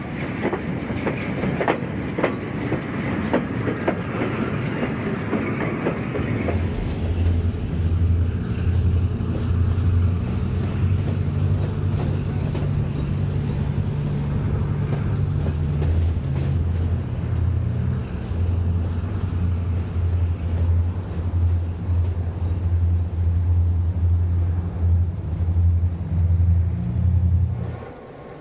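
Passenger train cars rolling past, their wheels clicking over rail joints. About six seconds in, this gives way to a diesel passenger locomotive's engine running with a steady low throb.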